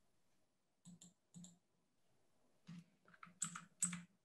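Faint computer keyboard clicks, a few about a second in and a quicker run near the end, as the slide presentation is advanced.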